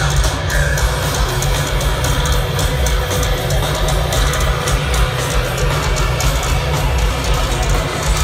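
Live heavy metal band playing loud and dense, with drums and guitars, heard from within an outdoor concert crowd.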